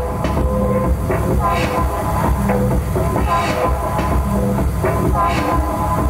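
Techno DJ set played from vinyl through a club sound system: a loud, driving electronic track with a steady low pulse and repeating percussion.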